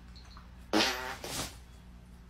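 A loud fart about a second in, a sudden half-second blast followed quickly by a shorter second one.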